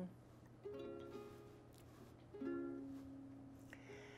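Ukulele strummed twice: two chords a little under two seconds apart, each left to ring and fade.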